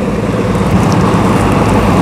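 Hitachi EX15-1 mini excavator's small diesel engine idling steadily.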